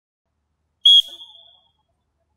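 One short, high whistle blast about a second in, loud at first and then fading away over about half a second.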